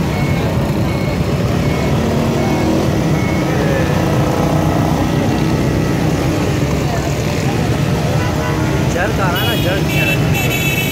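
Street crowd and traffic noise: many voices mixed with the steady running of car and motorcycle engines. Near the end a vehicle horn starts to sound.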